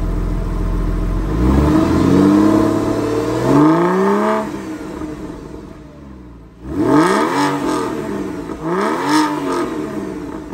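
Porsche 996 Carrera 4's 3.4-litre water-cooled flat-six, heard at the exhaust, running at idle and then revved twice, each rev rising and falling over a second or two, before settling. In the second half it is blipped sharply twice, each time rising quickly and dropping back.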